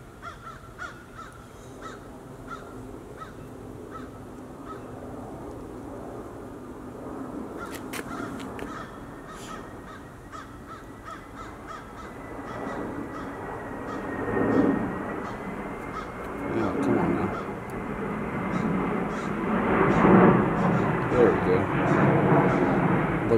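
A rushing engine noise, like a passing vehicle or aircraft, builds slowly and is loudest near the end, with a faint steady whine through the middle seconds and a few short calls.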